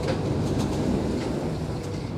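Alstom Metropolis C751C train's sliding passenger doors opening at a station, a rumbling slide with a few light clicks that eases off near the end, over the steady hum of the stopped train.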